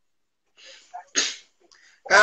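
A person sneezing once, a little after a second in, after a short faint intake of breath.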